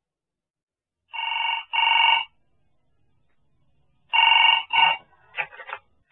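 Telephone ringing with a double-ring pattern: two short rings, a pause, then two more, the last one cut short as the call is answered.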